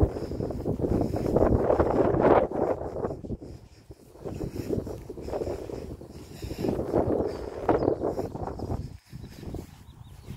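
Wind buffeting the phone's microphone in uneven gusts, a rumbling rush that is strongest in the first three seconds and eases off and returns later.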